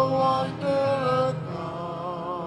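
Worship team singing a slow hymn in church, each sung note held for about half a second before moving to the next.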